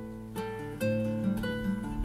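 Classical nylon-string guitar strumming chords: three chords struck less than a second apart, each left to ring.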